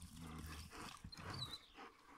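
A dog growling faintly and low, in two short spells.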